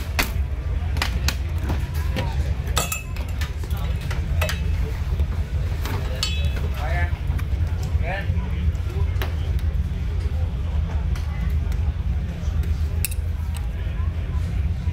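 Racing harness buckles and straps clicking and clinking as a driver is strapped into a race car seat during a practice driver change, over a steady low rumble.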